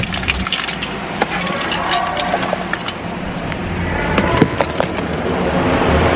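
Car keys jingling and clinking as they are picked up and handled, with rustling over a low background rumble.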